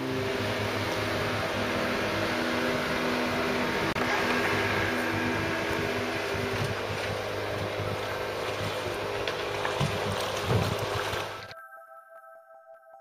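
Boat engines running in a harbour channel: a small motorboat's outboard motor and a red fishing boat's engine, with water churning in the wake. The sound is steady and cuts off suddenly near the end.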